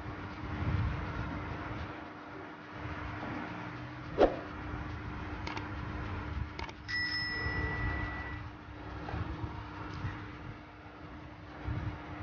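Steady low hum and rumbling background noise. About seven seconds in, a click is followed by a single bell-like ding that rings for about a second and a half: a subscribe-button notification sound effect.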